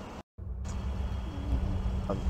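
A brief dropout to silence about a quarter second in, then a steady low rumble of an automatic car wash heard from inside the vehicle's cabin.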